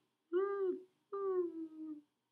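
A person's voice making two wordless vocal sounds: a short arching one, then a longer one whose pitch slowly falls.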